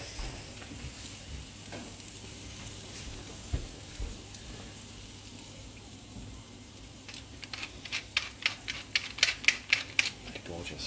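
Prawns sizzling faintly on a gas barbecue grill. From about seven seconds in comes a quick run of sharp, crunchy clicks, several a second and loudest near the end, as a hand grinder is twisted to season the prawns.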